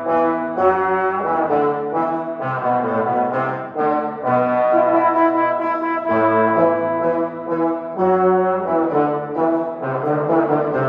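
Brass trio of two trombones and a euphonium playing classical music together, held notes and chords moving every second or so.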